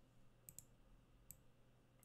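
Near silence, broken by three faint, short clicks: two close together about half a second in, and one more a little past a second.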